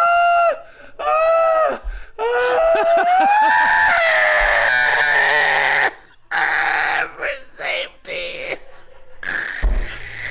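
Two men laughing hysterically, with no words: two short high-pitched shrieks of laughter, then a long squealing laugh that climbs and holds for about four seconds before breaking into short gasping bursts.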